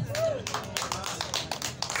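A few people clapping briefly, with scattered sharp claps in an irregular run from about half a second in.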